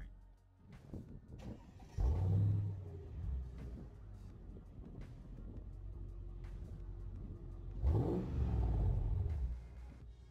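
Mercedes-Benz S55 AMG's supercharged V8 heard at its twin exhaust tips, revved twice from idle. There is a short blip about two seconds in that falls back, then a longer rev near the end that rises in pitch and holds before dropping.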